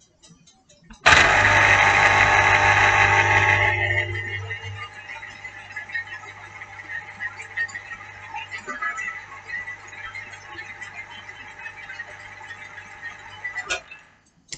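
Electric citrus juicer's motor starting as an orange half is pressed onto its reamer cone: loud for about three seconds, then a quieter steady hum as the reamer turns, stopping just before the end when the pressure comes off.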